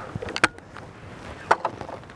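A few sharp metallic clicks: a pair about half a second in and another pair around a second and a half. This is typical of an over-and-under shotgun being opened and handled straight after firing.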